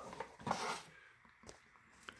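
Cardboard baseball cards being handled and flipped by hand: a brief soft rustle about half a second in, then near quiet with a faint tick.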